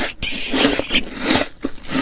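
Close-miked ASMR chewing of a bite of apple: a quick run of wet crunches.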